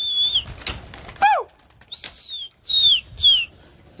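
A flock of pigeons taking flight with wings flapping, under a series of short, high whistles, most of them falling in pitch. One lower call rises and falls about a second in, and a quick pair of falling whistles comes near the end.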